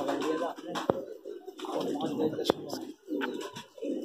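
Domestic pigeons cooing, with a few sharp clicks about a second in, two and a half seconds in and just at the end.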